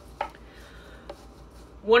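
A light knock, then a fainter tick about a second later, as a bunch of cilantro is put into a blender jar, over low kitchen room noise.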